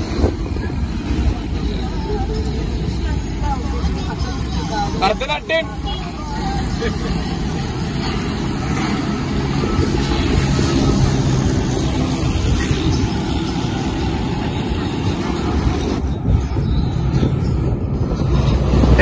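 Engine and road noise of a small passenger van, heard from its open rear compartment as a steady low rumble that grows somewhat louder partway through, with people's voices in the background.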